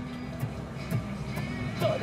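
Live band music: a steady low bass line with guitars over a regular beat of sharp clicks, about two a second.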